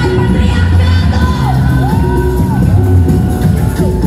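Loud live pop-electronic music from a band and DJ over a club sound system, with a heavy pulsing bass and a pitched line that slides down and back up several times. Singing and crowd shouts come in over it.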